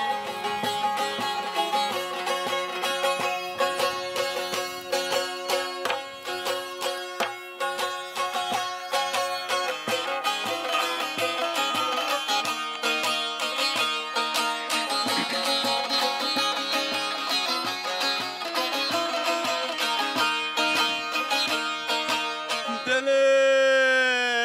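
Bağlama (saz) played solo: a fast plucked and strummed instrumental introduction to a Turkish folk song. Near the end a man's voice comes in singing a long, wavering note.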